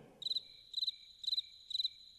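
Cricket chirping sound effect: four short, high chirps, about two a second, over an otherwise silent room. This is the cartoon cue for an audience that stays silent after a song.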